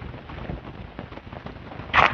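Rough, steady background noise with small crackles, then a brief splash near the end as a hooked hairtail (cutlassfish) breaks the water's surface.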